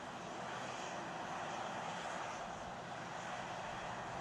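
Steady rushing noise at the launch site, even throughout, with a faint steady hum beneath it.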